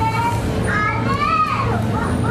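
High-pitched children's voices chattering and calling, over a steady low hum.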